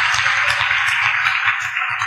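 Audience applause: many hands clapping in a steady wash, easing slightly near the end.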